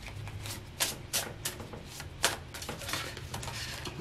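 A deck of tarot cards being shuffled by hand: irregular sharp clicks and snaps of cards slipping against each other, a couple a second, with one louder snap about two seconds in.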